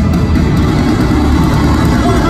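Live rock band playing through an arena PA, with electric guitar and bass, loud and heavy in the bass, in a gap between sung lines.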